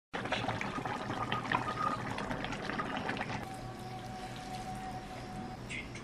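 A pot of hotpot broth with rice noodles bubbling, a dense run of small pops and crackles that thins out about three and a half seconds in. From then a steady tone holds until near the end.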